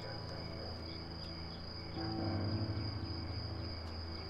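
Steady high-pitched cricket trill of a night-time ambience, with soft low music notes beneath it; a new, slightly louder low note comes in about two seconds in.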